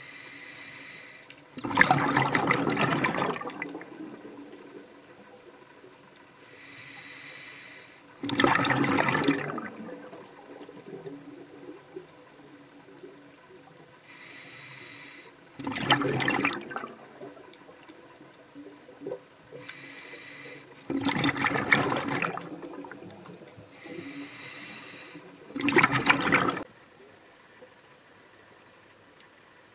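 Scuba diver breathing through an open-circuit regulator underwater: each breath is a hissing inhale followed by a louder rush of exhaled bubbles, five breaths about every five to six seconds.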